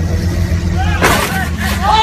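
A vehicle's engine running with a steady low rumble, voices in the background, and a short hiss about a second in.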